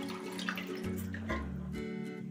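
Thick curry broth poured from a pot into an electric pressure cooker, a liquid pouring and splashing sound, over soft background music.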